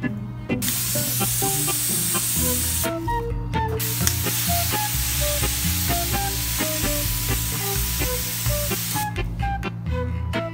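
Water mister spraying plants: two long hisses, the first about two seconds, then after a short break a second of about five seconds. Background guitar music plays under it.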